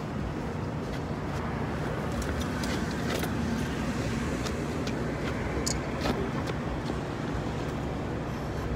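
Steady city street traffic noise, a low rumble of passing cars, with a few faint clicks in the middle.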